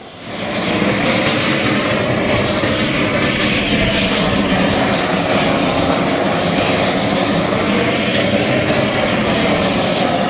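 Propane roofing torch burning steadily. Its flame is heating the underside of a torch-on bitumen roll-roofing membrane so the roll melts onto the roof as it is unrolled. The sound comes up within the first second, then holds loud and even.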